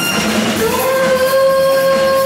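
A woman singing a Bollywood song live over backing music, sliding up into one long held note about half a second in.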